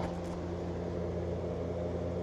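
Steady low hum of running reef aquarium equipment.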